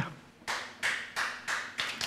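An audience clapping in a loose rhythm, about three claps a second, starting about half a second in.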